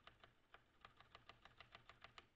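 Faint, rapid typing on a computer keyboard, about six or seven keystrokes a second, as lines of code are typed.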